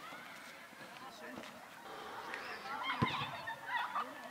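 Birds calling outdoors: a run of short, rising-and-falling calls that grows busier from about two seconds in, with a single sharp knock about three seconds in.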